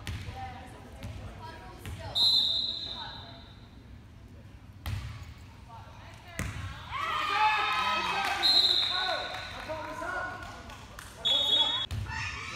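Volleyball being played in a gym: the ball is struck with two sharp smacks, players shout over each other, and three brief shrill high-pitched sounds ring out over the hall's echo.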